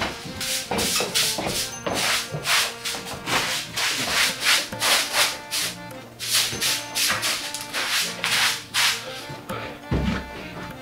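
Short straw broom sweeping in quick, repeated brushing strokes, about two to three swishes a second, with a brief pause about four seconds in and again near six seconds.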